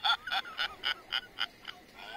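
A man laughing in character as Hiro, a steady run of short 'ha' bursts, about four a second.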